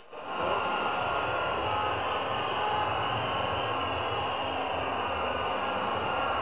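A steady, even background noise with no distinct events, starting after a brief sharp drop in level at a cut.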